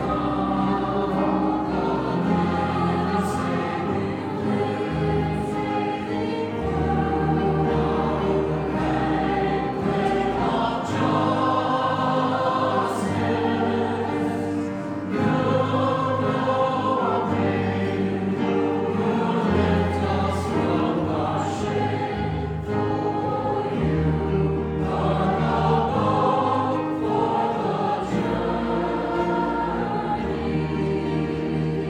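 Mixed choir singing a song in parts, accompanied by piano and guitars, with steady bass notes underneath.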